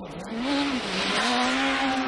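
Rally car engine at high revs on a gravel stage as the car approaches. Its pitch drops twice and climbs back, with a growing hiss of tyres and loose gravel as it comes close.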